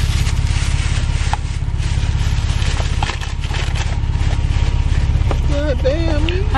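Car engine idling, a steady low rumble with a fine, even pulse, heard from inside the cabin. A voice starts up near the end.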